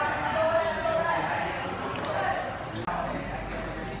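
Voices of several people talking in a room, with a few light knocks.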